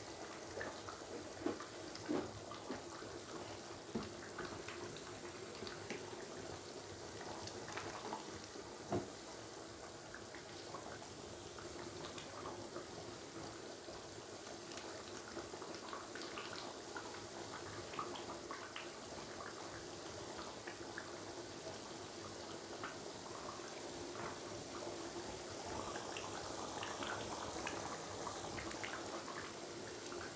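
Coconut-milk curry simmering gently in a wok, a faint steady bubbling, with occasional soft clicks and scrapes of a silicone spatula stirring through it.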